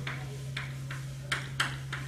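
Chalk writing on a chalkboard: about four sharp taps and short strokes of the chalk, mostly in the second half, over a steady low hum.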